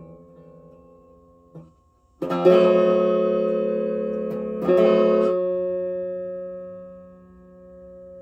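Guitar: a soft single pluck about one and a half seconds in, then a full chord strummed and left ringing, struck again about two and a half seconds later and fading slowly away.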